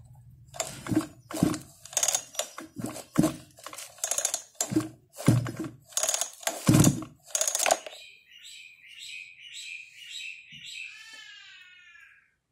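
Spring-assisted recoil starter of a Makita chainsaw pulled repeatedly: a dozen or so quick rasping strokes, about two a second, without the engine firing, stopping about eight seconds in. Then a few high, whining animal calls, the last one sliding down in pitch.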